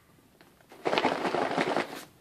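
A cardboard package being handled, giving a rustling, crackling scrape for about a second, starting near the middle.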